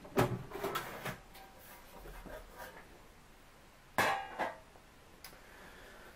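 Sheet-metal top cover of a Technics SH-E60 graphic equaliser being slid off its chassis, giving a run of clattering knocks in the first second and one louder metallic knock about four seconds in.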